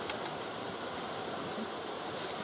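Steady, even background noise with no distinct events, a constant hiss-like rush.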